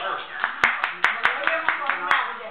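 Rhythmic hand clapping, about five claps a second, starting about half a second in, over voices.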